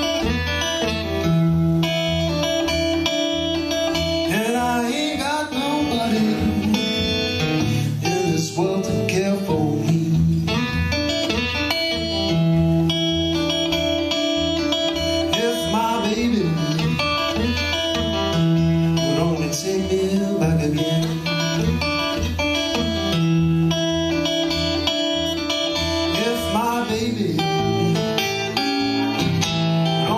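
Acoustic guitar playing an instrumental blues break: a steady pulse of low bass notes under picked melody notes that bend up and down in pitch.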